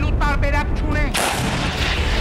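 A man's voice briefly, then about a second in a sudden explosion: a sharp blast that trails off in a long noisy rush.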